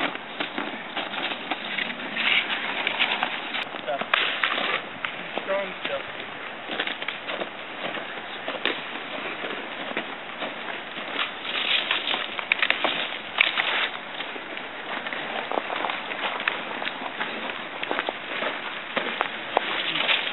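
Dry branches and brush being handled: dense rustling with many small cracks and snaps of twigs and dry leaves as the branches are dragged and leaned together. It comes in busier spells a few times.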